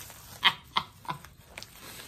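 A woman's quiet, breathy laughter: several short exhaled bursts.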